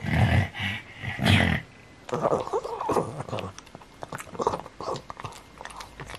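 Black pug making three loud snorting grunts in the first second and a half, then wet smacking and chewing mouth noises, many quick clicks, as it licks and nibbles a fingertip.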